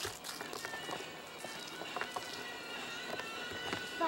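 Hurried footsteps on dry, cracked dirt, uneven and irregular, mixed with the rustle and handling noise of a camcorder carried on the move.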